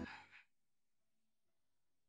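Background music stops abruptly, followed by a short breathy exhale in the first half second, then near silence.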